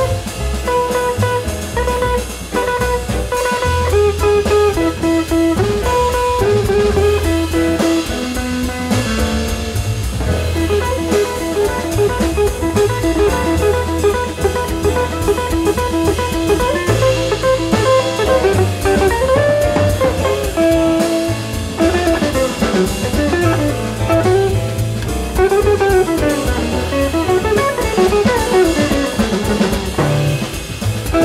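Jazz quartet playing live: guitar playing single-note melody lines over double bass and a drum kit with cymbals.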